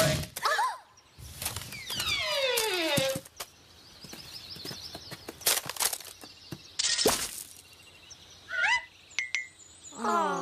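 Cartoon sound effects for a cracking dinosaur egg: sharp knocks and cracking sounds, a long falling whistle-like glide about two seconds in, and short rising chirps near the end.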